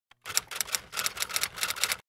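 Typewriter-style typing sound effect: a fast, uneven run of key clicks, about eight a second, that cuts off suddenly at the end.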